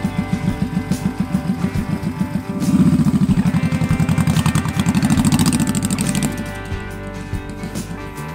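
Cruiser motorcycle engine running with a steady low pulsing beat as the bike rides up and pulls in, loudest from about three to six seconds in as it passes close, under background rock music.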